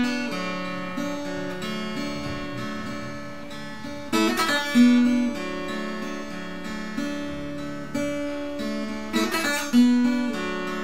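Acoustic guitar in open D tuning, picked in a repeating pattern of single notes over a ringing chord. A quick strummed chord sounds about four seconds in and again near the end.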